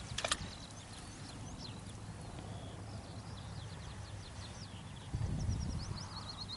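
Small birds singing in short high chirps over a steady low rumble on the microphone, with a sharp knock just after the start and a louder low rumble near the end.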